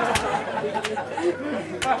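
Voices talking in the middle of a shadow-puppet performance, with three sharp knocks: one just after the start, one near the middle and one near the end.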